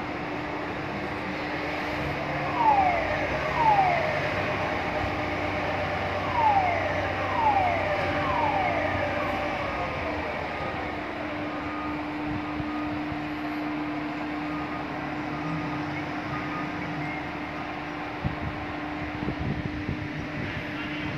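Steady machinery hum from the heavy-lift crane lowering a bundle of steel pipes. Five short falling whistle-like tones come in the first half, the loudest moments, in pairs about a second apart. Faint short beeps repeat at an even pace later on.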